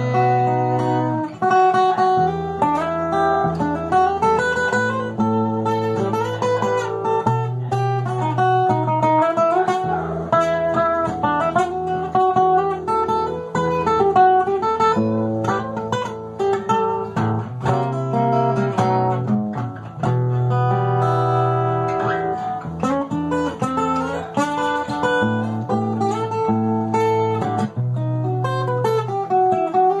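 An instrumental stretch of a song led by acoustic guitar: a plucked melody moves up and down over steady bass notes, with no singing.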